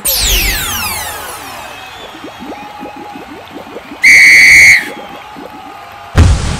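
A referee's whistle blown once, a short steady shrill blast about four seconds in and the loudest sound here. Before it a cartoon falling-sweep sound effect with a low thud opens the passage.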